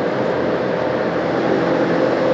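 Production machinery for rubber waterproofing material running just after being switched on at its push-button control panel: a steady mechanical whir with an even hum.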